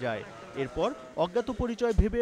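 Speech only: a man's voice talking, with two short pauses.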